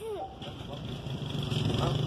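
A vehicle engine rumbling low and steadily, growing louder over the second half.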